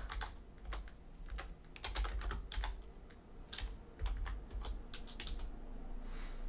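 Computer keyboard being typed on: irregular, separate keystroke clicks, some in quick pairs and runs.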